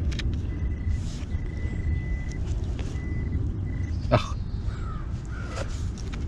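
Handheld metal-detecting pinpointer sounding a thin, steady high tone that breaks off and returns over the first three seconds as it is worked in the dug hole, over a steady low rumble. A short sweeping call sounds once about four seconds in.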